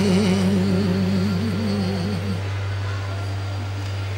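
The tail of a sung note, wavering in pitch and fading out about two seconds in, followed by a steady low hum.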